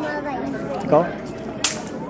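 Background chatter of voices in a large room, with a short word spoken about a second in and one short, sharp high-pitched noise near the end.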